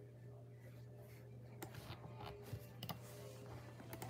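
A few faint clicks of computer keys, spread out over a few seconds, over a low steady hum.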